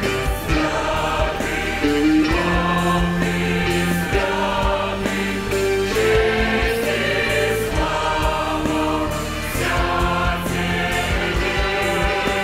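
Large mixed church choir singing a hymn in held chords with a church orchestra of violins, hammered dulcimers, guitars, keyboard and drums.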